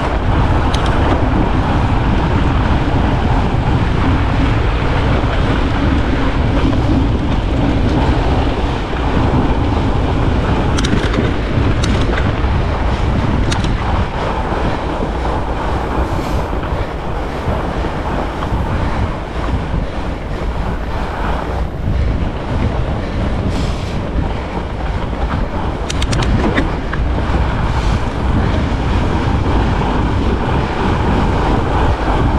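Steady wind rush and rumble on an action camera's microphone while riding a fat bike over a groomed snow trail, with a few sharp clicks scattered through.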